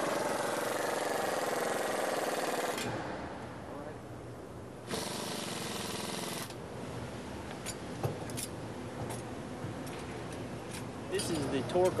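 Pneumatic impact wrench running in a burst of about three seconds, driving home a bolt on a rear coilover suspension, then a second shorter burst about five seconds in. Light metallic clicks and clanks of tools on the suspension parts follow.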